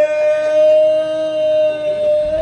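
One long, steady held note lasting about two seconds, sliding up slightly into pitch at the start and then holding level.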